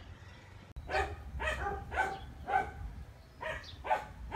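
A dog barking, a string of short barks about two a second, starting about a second in.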